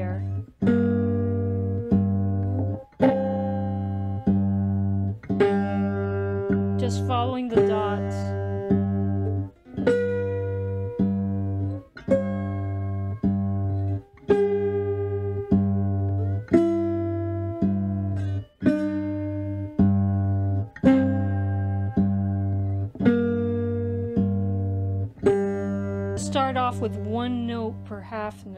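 Fretless three-string cigar box guitar fingerpicked with a slide: a steady bass note picked by the thumb about once a second, with melody notes above it that slide between pitches.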